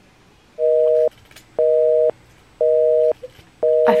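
Telephone busy signal: a two-tone beep, half a second on and half a second off, sounding four times.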